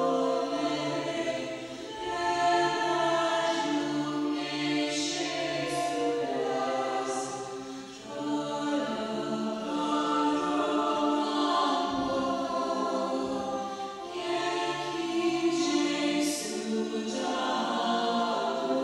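Voices singing a slow devotional chant as background music, in long held phrases of several seconds each with brief pauses between them.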